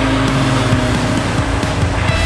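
Triumph Spitfire sports car driving past, its engine and road noise mixed with rock music.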